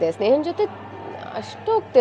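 Conversational speech, a voice talking in short phrases over a low, steady background hum.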